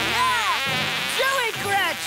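Cartoon fart sound effect for an elephant's gas blast: a loud, buzzy raspberry that swoops up and down in pitch several times.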